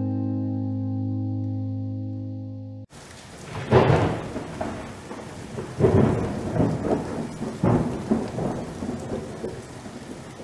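A held guitar chord fades out and stops abruptly about three seconds in, then a thunderstorm recording begins: steady rain with several rolls of thunder, the loudest about a second after the rain starts.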